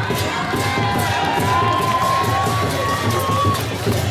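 Crowd clapping and cheering, with one voice holding a long high cheer that rises slowly in pitch through most of it.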